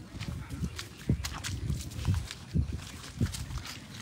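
Footsteps through wet grass and mud, about two steps a second, each a soft low thud with a light rustle.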